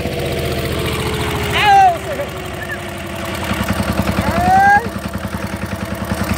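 Yanmar TC10 walk-behind tractor's single-cylinder diesel engine running with a steady pulsing beat and a faint slowly falling whine. Two short high cries break over it, one about a second and a half in and a louder one near the five-second mark.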